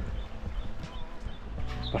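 Footsteps on loose rocks: irregular hollow knocks and scrapes of boots on stones, with a few faint bird chirps behind.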